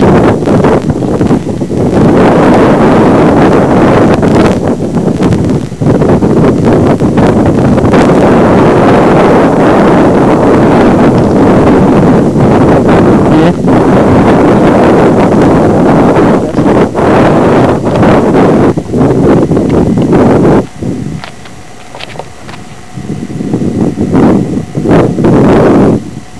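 Strong wind buffeting a camcorder microphone, loud and rumbling, easing for a few seconds near the end before gusting up again.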